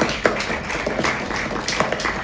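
Applause: many hands clapping at once, a dense patter of claps with a few sharper, louder ones standing out.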